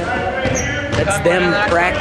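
A boy's voice close to the microphone, the words unclear, with a basketball bouncing.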